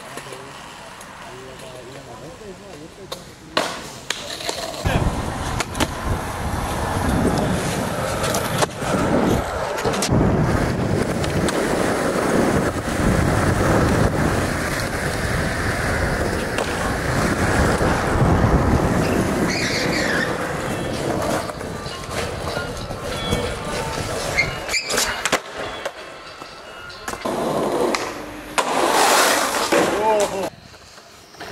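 Skateboard wheels rolling over concrete, broken by the sharp clacks of boards popping and landing tricks, across several clips.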